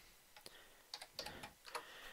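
Computer keyboard keystrokes: a handful of faint, separate key clicks as a short terminal command is typed and entered.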